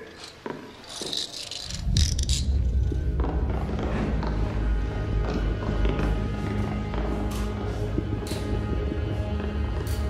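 Handcuffs clicking shut with a short run of sharp metallic ratchet clicks in the first couple of seconds. Then a loud, low, steady drone of film-score music comes in and takes over.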